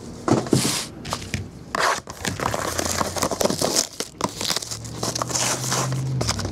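Shrink-wrapped trading-card boxes being handled and set down on a countertop: crinkling plastic wrap, scraping and light knocks of cardboard.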